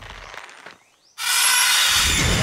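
Horror-trailer jump-scare sting: a faint fading tail drops to a moment of near silence, then just past halfway a sudden loud, harsh, hissing noise hit cuts in and holds.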